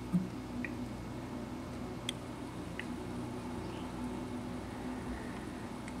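Quiet room tone with a steady low hum, broken by a few faint, brief ticks.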